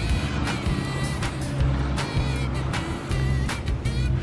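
Background music: a melody over a steady beat and bass line.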